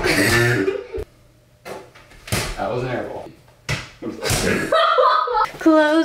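People's voices exclaiming and laughing in short bursts, with a few sharp impacts in between.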